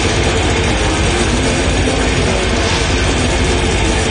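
Death metal band playing live at full volume: a very fast, unbroken run of bass-drum hits under distorted guitars.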